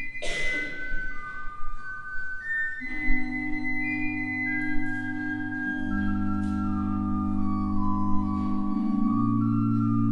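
Church pipe organ accompanying a hymn in long sustained chords. The bass notes drop out with a brief hiss at the start and come back about three seconds in, and the chord changes a few times after that.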